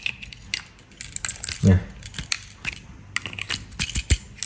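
Small plastic clicks and rattles of a yellow cable plug being handled and fitted into the black connector of a Honda SH smart-key control unit (SCU) board, with scattered sharp clicks throughout.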